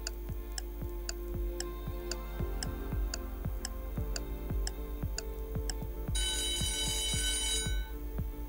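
Quiz countdown timer sound effect: clock ticking about twice a second over background music with a steady beat. About six seconds in, an alarm ring sounds for about a second and a half as the countdown runs out.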